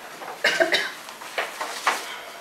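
A person coughing about half a second in, followed by two light knocks.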